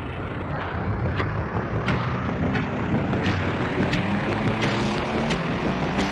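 Intro music fading in over a noisy, static-like wash, with a sharp tick about every 0.7 s, low sustained synth tones coming in about a second in, and gliding tones near the end.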